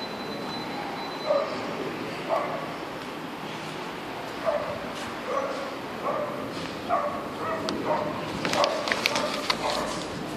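A dog yapping: about a dozen short, high-pitched barks at irregular intervals, coming faster near the end, over steady background noise, with a few sharp clicks in the last two seconds.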